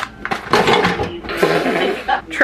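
Plastic food packaging crinkling as it is handled, in two long crackly stretches after a sharp tap at the start.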